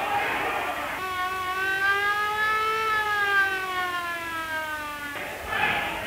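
Police car siren sounding one long wail that rises slowly, then falls away and cuts off abruptly, between bursts of noisy commotion.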